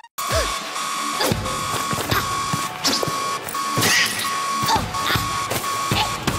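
An alarm beeping steadily at about two beeps a second, with a series of hits and short whooshes over it, as in a fight scene's sound effects.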